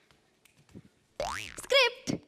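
A cartoon-style comic sound effect: a quick 'boing' glide that rises and then falls in pitch, starting a little over a second in, followed right away by a short wavering cry.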